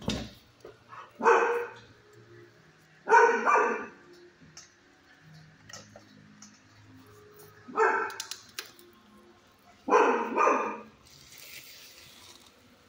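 A dog barking in a shelter kennel: four loud barks, spaced a couple of seconds apart.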